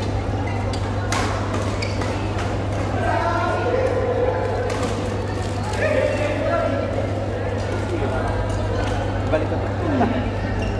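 Busy indoor badminton hall: scattered sharp racket hits on shuttlecocks and indistinct chatter from players, ringing in a large echoing room, over a steady low hum.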